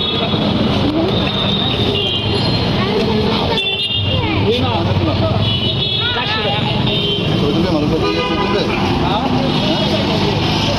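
Busy street: several voices talking over one another amid traffic, with short horn toots sounding now and then.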